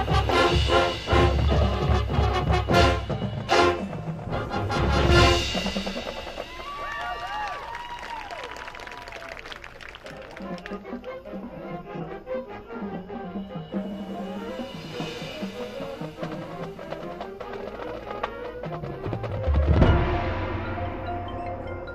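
High school marching band playing its field show: loud brass and percussion hits for the first five seconds or so, then a much quieter, softer passage, swelling to a loud hit near the end.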